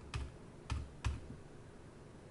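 Computer keyboard keys pressed, three separate keystrokes in the first second or so.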